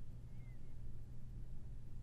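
Faint, steady low hum of room tone with nothing else happening.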